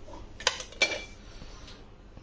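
A metal utensil knocking against a stainless steel cooking pot: two sharp clinks about a third of a second apart, the second ringing briefly.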